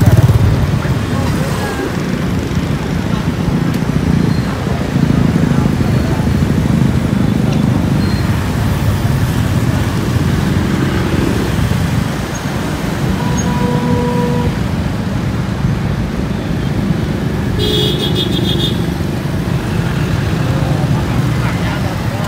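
Steady engine and road noise from riding a motor scooter slowly through street traffic, a low continuous rumble with other motorbikes running nearby. A brief high-pitched sound, such as a horn, cuts in about eighteen seconds in.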